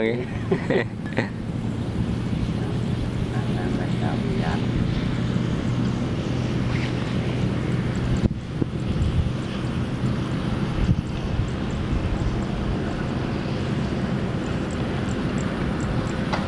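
Quick G3000 Zeva walking tractor's single-cylinder diesel engine running steadily with an even drone.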